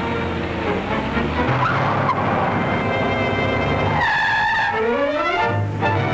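A car engine and road noise as a 1940s sedan moves off, mixed with orchestral film music. About four seconds in the car sound drops away and the music takes over with rising phrases.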